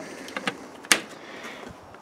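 A single sharp click about a second in, with a few fainter clicks before it, over low background noise.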